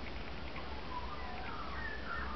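Faint bird calls in the background: a few thin, whistled notes gliding up and down from about a second in, over a low steady outdoor rumble.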